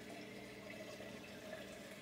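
Faint, steady trickle of water from a running reef aquarium's filtration and circulation, with a faint steady hum beneath it.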